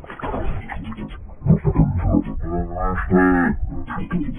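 A heavily effects-processed voice clip, muffled with everything above the mid-range cut away, breaking up in short fragments and then stretching into two long, drawn-out held tones near the end.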